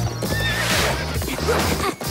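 Cartoon unicorn whinnying during a race, over background music with held low notes.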